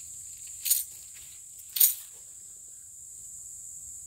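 Steady high-pitched drone of insects. Two short scuffs or rustles break over it, about a second apart, the second the louder.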